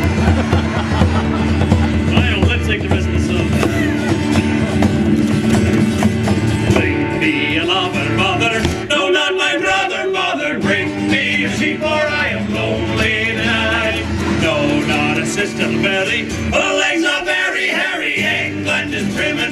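Upbeat acoustic folk band music with guitars strumming, an instrumental introduction to a song; a high melody line joins about seven seconds in.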